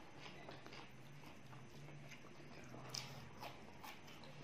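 Faint eating sounds: scattered wet chewing and lip smacks with fingers picking rice off a steel tray, the sharpest click about three seconds in. A low steady hum runs underneath.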